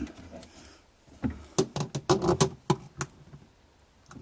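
Pliers clicking and tapping against a brass drain-cock fitting as it is turned: a run of about eight sharp, irregular clicks over some two seconds, starting about a second in.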